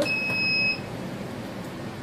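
A solid-state 500 W shortwave diathermy unit's keypad gives one steady, high-pitched beep lasting under a second. It confirms a button press while manual mode is selected.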